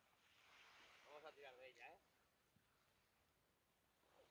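Near silence, with a faint voice speaking briefly about a second in.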